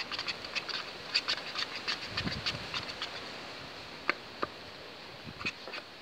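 A spoon stirring thickening slime in a small bowl: a quick run of small, irregular clicks and sticky squelches that thins out over the second half.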